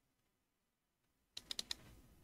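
Computer keyboard keystrokes: a quick run of four or five sharp clicks about a second and a half in, after near silence.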